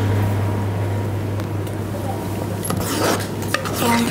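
A spoon stirring in a cooking pot of lentil soup, scraping and clinking against the metal, with a few sharper clinks near the end. A steady low hum runs underneath.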